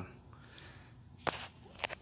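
Two short sharp taps, the first about a second and a half in and louder than the second, over a faint steady hiss and a thin high tone.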